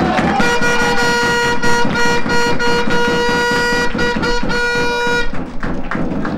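A horn blown in one long, steady note for about five seconds, starting about half a second in and then stopping, with rhythmic beating underneath.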